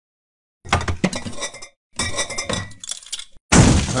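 Cartoon sound effects of bottles, jars and food containers clinking and clattering as a fridge is rummaged through. The sound comes in two bursts, with a louder one starting near the end.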